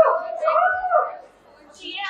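A high-pitched voice drawn out in one long exclamation, gliding up and held for about a second, then falling off into a brief pause.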